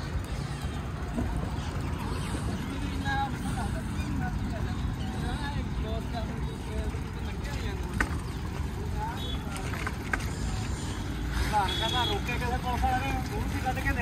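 Wind rumbling on the microphone while walking outdoors, with a click about eight seconds in and faint voices near the end.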